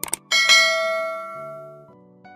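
A quick double click, then a bright bell ding that rings out and fades over about a second and a half: the notification-bell sound effect of a subscribe animation.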